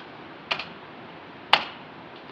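Two key clicks on the MEGA65 prototype's keyboard, a softer one about half a second in and a sharper one a second later, pressed to advance the slide show.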